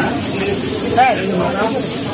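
Background chatter of several voices, with one voice clearer about a second in, over a steady high hiss.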